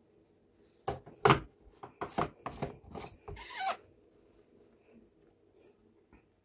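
Handling noise: a run of irregular clicks, knocks and rubbing lasting about three seconds, with no blender motor running.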